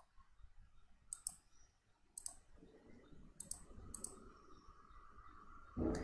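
Faint computer mouse clicks, about six of them, some in quick pairs like double-clicks.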